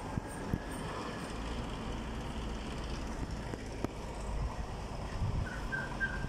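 Street traffic: cars driving by on the road, with a low rumble through most of the stretch. Near the end there are a few short, high chirps.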